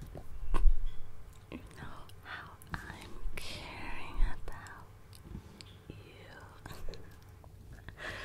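Soft whispering close to the microphone, with clicks and low knocks from hands moving on a wooden tabletop. The loudest is a dull thump about half a second in, and another comes near four seconds.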